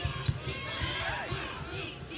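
Basketball being dribbled on a hardwood court: repeated low thumps of the ball over steady arena crowd noise.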